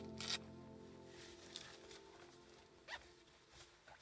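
Background music fading out, with a short, sharp rustle of cold-weather gear being handled about a quarter second in, the loudest sound, and a couple of fainter rustles later.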